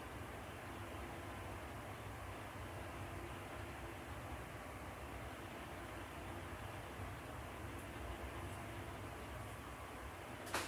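Faint, steady hiss and low hum of room tone, with no distinct handling sounds from the wire being wound on the pencil.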